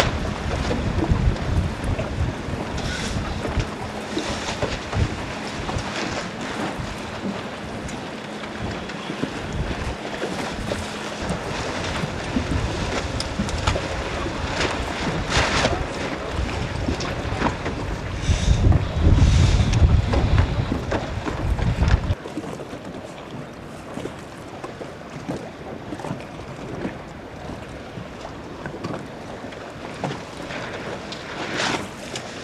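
Wind buffeting the microphone over choppy water, with waves splashing around the dinghy hulls. The heavy low rumble of the gusts is strongest about two-thirds of the way through, then stops abruptly, leaving lighter wind and water.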